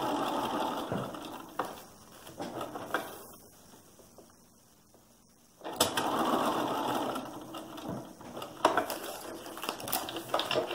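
Bernina sewing machine stitching through foundation paper and fabric: a run of stitching that stops about a second and a half in, then, after a pause of about four seconds, starts again abruptly and runs for about two seconds. A few light clicks follow near the end.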